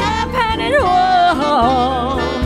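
Live blues with a small jazz band: a woman sings a drawn-out, wordless wavering line that slides in pitch, over piano, upright bass and drums.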